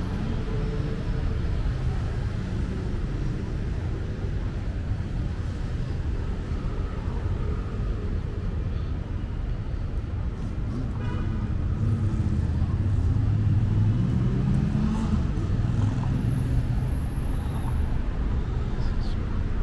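City road traffic: a steady rumble of passing cars' engines and tyres. It grows louder for a few seconds past the middle as a vehicle accelerates past, its engine note rising.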